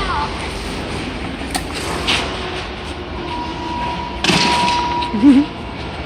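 An old leather couch being tipped over onto concrete, with a thump about four seconds in, over a steady background rumble. A steady high tone sounds for about two seconds around the same time.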